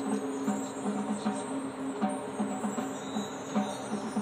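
Marching band's front ensemble playing the show's opening: a repeating figure of short pitched notes, about three or four a second, on mallet percussion and keyboard.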